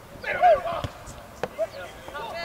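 Soccer players shouting to each other on the pitch, the loudest call about half a second in, with a couple of sharp thumps of the ball being kicked.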